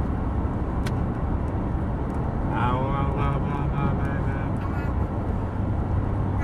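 Steady road noise inside a moving car's cabin, a low rumble, with a small click about a second in and a short vocal sound near the middle.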